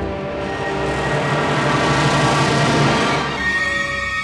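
Full symphony orchestra playing a loud, dense passage that swells to its loudest about three seconds in. A bright high held note enters near the end as the texture thins.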